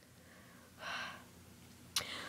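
A person's single short gasp, a quick breathy intake of air about a second in, with near silence around it.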